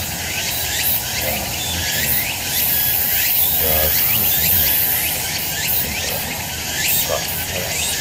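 A man's low, quiet ritual chant, with steady high buzzing and many short chirps throughout.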